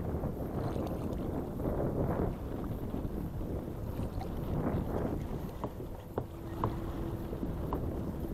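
Wind buffeting the microphone and choppy water slapping against a kayak's hull, with a few light clicks in the second half.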